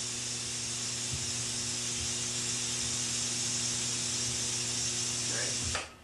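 Tesla coil running, its spark discharge making a steady high hiss over a low electrical hum. It cuts off suddenly near the end.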